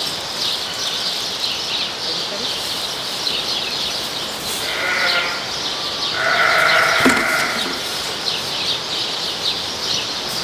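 Sheep bleating twice: a short call about five seconds in, then a longer, louder one a second later, over a steady background of high chirping.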